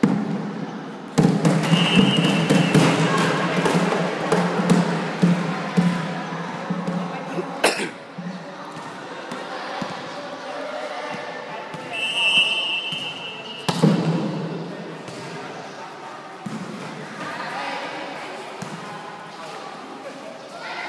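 Spectators shouting and chattering in an echoing indoor sports hall during a volleyball match, loudest in the first few seconds, with sharp thuds of the ball being struck, the hardest about eight seconds in. A referee's whistle blows briefly twice, once near the start and again about twelve seconds in.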